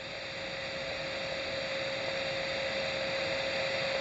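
Steady static hiss with a faint, steady mid-pitched tone from a NOAA weather radio's speaker: the dead air between two broadcast messages. The hiss grows slightly louder through the pause.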